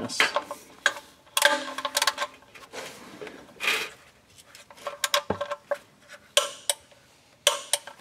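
Click-type torque wrench ratcheting in irregular metallic clicks as it tightens an oil pan drain plug, ending near the end with a sharp click as the wrench breaks over at the set 22 foot-pounds.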